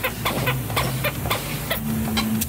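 A quick, irregular run of sharp clicks and knocks, about four a second, from hand work at a steel shop bench, over a steady low hum.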